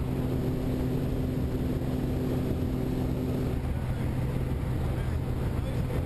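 A light aircraft's engine and propeller droning steadily, heard inside the cabin during the climb to jump altitude. A higher tone in the drone fades out about halfway through.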